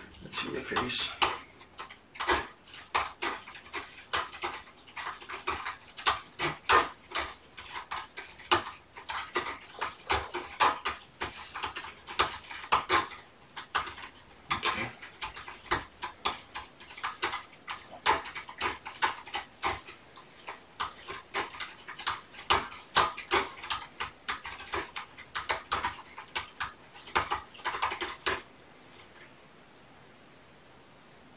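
Dense, irregular light clicking and clattering, many small knocks a second, that stops about a second and a half before the end.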